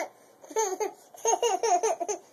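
A toddler laughing in two bursts of quick, high, falling laugh pulses: a short one about half a second in and a longer one from just past a second.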